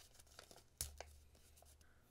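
Small paper envelope being torn open by hand: faint rustling with a sharper rip a little under a second in.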